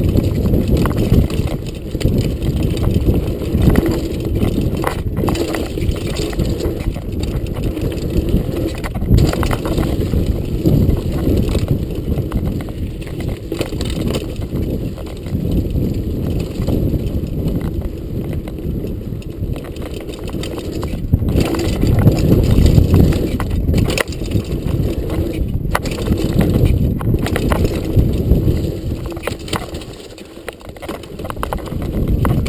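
Mountain bike ridden fast downhill on a dirt trail: a steady low rumble of tyres on dirt and wind on the microphone, with sharp knocks from the bike over bumps now and then.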